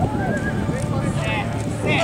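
A horse galloping through a pole-bending pattern on dirt, with hoofbeats under the run, and several high, wavering calls over it: one at the start, one about a second and a quarter in, and one near the end.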